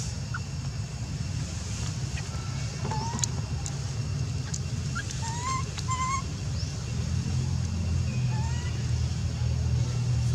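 A steady low rumble that grows a little louder past the middle, with short rising chirps or squeaks heard several times from about three seconds in.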